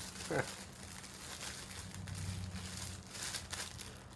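Clear plastic bag packaging crinkling irregularly as it is handled.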